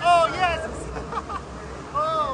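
Raft riders letting out short yells that rise and fall in pitch, a loud one at the start and fainter ones about a second in, over the steady rushing noise of the river.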